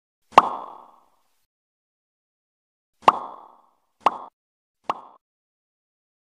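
Four short, sharp click-pop sound effects, one about half a second in and three more at roughly one-second spacing near the end, each dying away quickly: the button-press sounds of an animated subscribe button.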